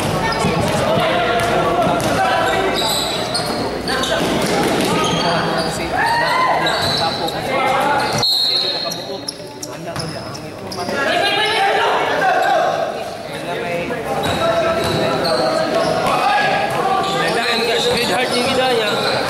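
Basketball dribbling on a hard indoor court, mixed with players and spectators calling and shouting, all echoing in a large hall. The noise eases off briefly about halfway through, then picks up again.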